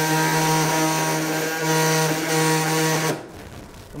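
Robotic-arm-guided surgical bone saw running steadily with a buzzing whine as it cuts through the knee bone, then stopping abruptly about three seconds in.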